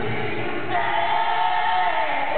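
Live rock band in a passage where the bass and drums fall away, and a singer holds one high note from under a second in.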